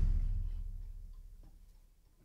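The ring-out of a band's opening hit: a cymbal wash and a low note fade away over about a second and a half. Near silence follows, with a couple of faint ticks.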